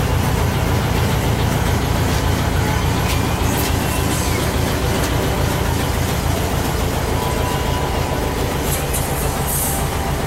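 Volkswagen Kombi's air-cooled flat-four engine idling steadily, a low, even rumble heard from inside the cab. A couple of brief high hisses come near the end.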